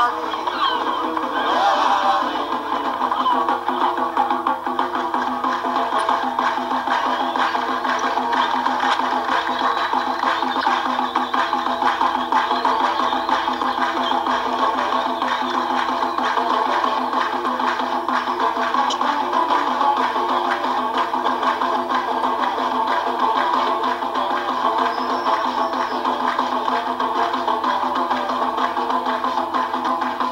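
Moroccan folk music playing back through a computer's small speaker, sounding thin and without bass.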